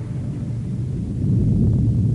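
Low, steady rumbling sound effect, with no pitch to it.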